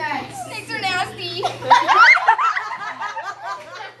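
Young people's laughter and excited high-pitched squeals, with a loud rising shriek about two seconds in.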